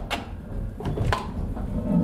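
Wooden milling machinery of a post windmill running slowly, a low rumble with a few sharp wooden knocks: one near the start and two close together about a second in. The mill is grinding under load as the wind drops.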